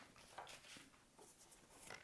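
Near silence: room tone with a few faint, soft handling sounds.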